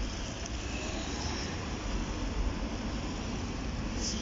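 Steady outdoor background noise dominated by a low rumble, with no distinct events.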